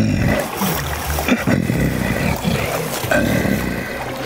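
Adult male western lowland gorilla giving a low, rough, gurgling rumble, a little gurgle that is his first sign of being friendly toward the man before him.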